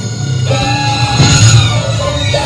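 Live improvised music for violin and percussion: sliding, shifting high notes over a steady low hum.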